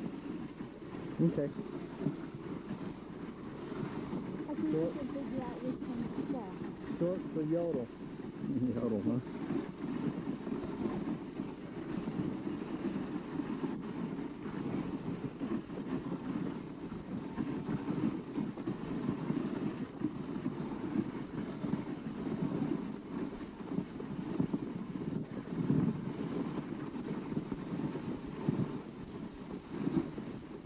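Dog sled gliding over packed snow behind a running team: a steady rumbling hiss of the runners on the snow. Faint voices come and go in the first third.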